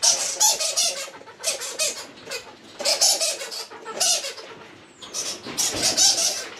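Common squirrel monkey squeaking in repeated short, high-pitched bursts.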